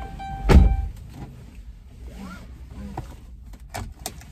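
A car door shutting with a heavy thud about half a second in, followed by a few faint clicks and rustles inside the cabin.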